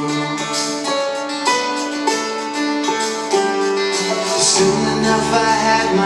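Live band music led by an acoustic guitar, with singing over it; the bass comes in about two-thirds of the way through, filling out the low end.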